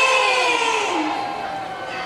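A woman's voice holding a long sung note that slides down in pitch about a second in and fades away.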